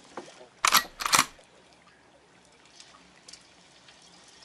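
Two quick camera-shutter clicks about half a second apart, added as an editing sound effect, followed by faint steady boat-deck ambience.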